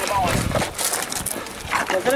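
A man's brief shouted call near the start, falling in pitch, then the scuffing and clatter of several men climbing concrete steps.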